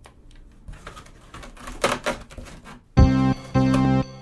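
A run of small clicks and rustles, then about three seconds in a Casio electronic keyboard comes in loudly with two held chords.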